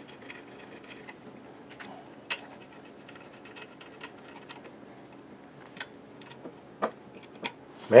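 A 4 mm Allen wrench turning M5 socket-head bolts into a CNC machine's gantry plate: a few light, irregular metallic clicks over a quiet background.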